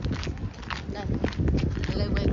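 Footsteps of a person walking on a paved car park, a steady run of short steps.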